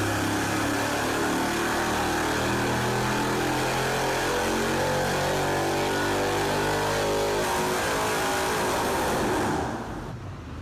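Supercharged 4.8-litre LS V8 running on an engine dyno, loud and steady, its tone changing about seven and a half seconds in before it falls away sharply near the end.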